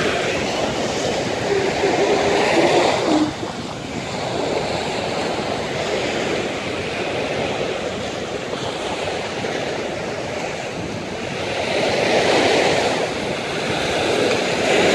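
Small Gulf of Mexico waves breaking and washing up on the beach: a continuous rush of surf that swells louder as waves break about two seconds in and again near the end.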